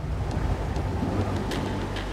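Rushing white water pouring down a steep creek chute, with a low steady engine hum underneath.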